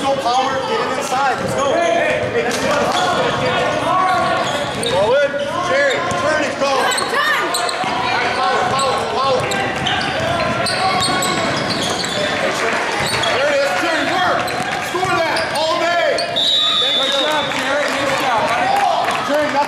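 Youth basketball game in a school gym: a basketball bouncing on the hardwood floor among the voices of players and spectators, echoing in the large hall. A brief high steady tone sounds near the end.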